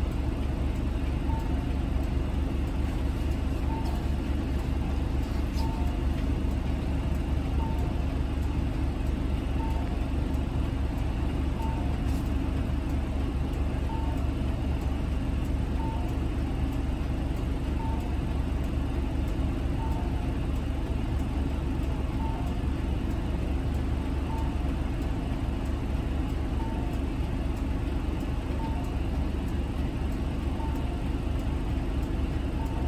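City bus's diesel engine idling with a steady low rumble while stopped, heard from inside the cabin. A soft two-tone electronic beep repeats about once a second.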